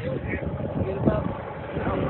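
Low rumbling noise aboard a small fishing boat, with short fragments of excited voices.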